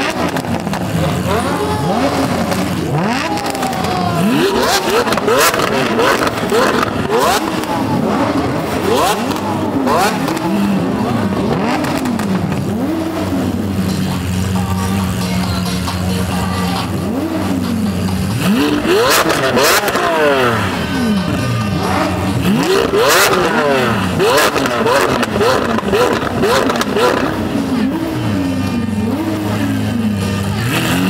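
Lamborghini supercar engines idling and being revved again and again, each blip rising and falling quickly, with a few sharp exhaust cracks in the second half. Crowd voices run underneath.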